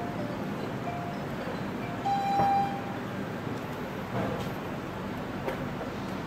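Elevator arrival chime: a single steady electronic tone about half a second long, sounding a couple of seconds in, as the Guangri machine-room-less car reaches the floor. Steady background noise runs under it.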